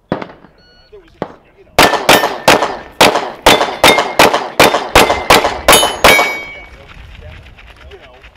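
A shot timer beeps briefly, and about a second later a pistol fires a rapid string of about a dozen shots, roughly three a second, over four seconds. Steel targets ring on the hits.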